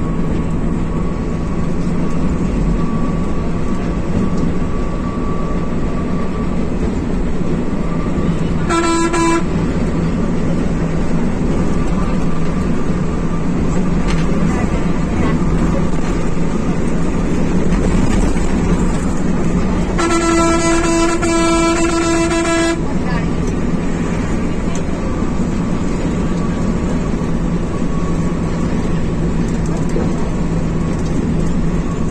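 Volvo B11R coach's six-cylinder diesel engine and tyres giving a steady drone heard from the cab at highway speed. A horn sounds twice over it: a short toot about nine seconds in and a longer blast of nearly three seconds about twenty seconds in.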